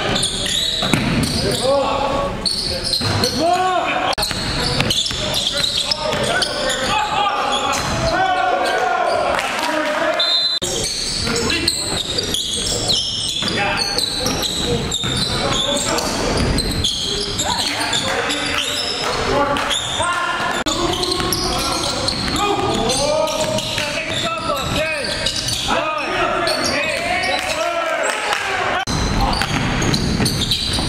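Live court sound from a basketball game in a gym: a basketball bouncing on the hardwood floor and players' voices calling out, echoing in the large hall.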